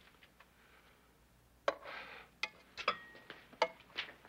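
Dishes and serving utensils clinking and scraping as food is dished up. Light ticks come first, then a scrape about halfway through, then several sharp clinks, a few of them ringing briefly.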